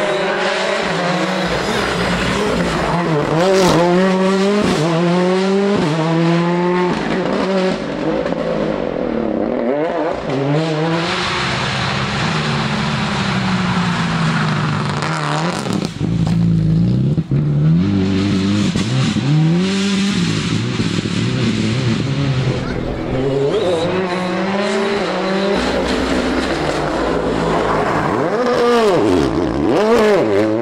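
Rally cars, among them Ford Fiesta R5s, driven flat out through corners: engine notes climbing and falling in quick succession as the drivers shift up and down. There is a short break in the sound about halfway through, and a steep rise in pitch near the end.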